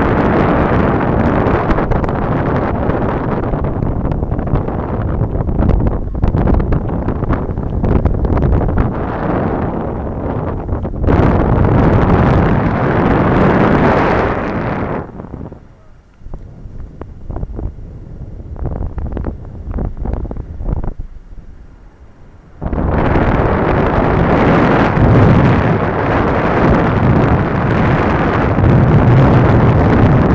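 Wind rushing and buffeting over the microphone of a camera carried in flight. About halfway through it drops suddenly to a quieter, gustier rush for about seven seconds, then comes back loud all at once.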